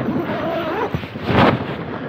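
Wind buffeting the nylon flysheet of a tunnel tent, the fabric rustling and flapping in a steady rush, with a louder gust about one and a half seconds in.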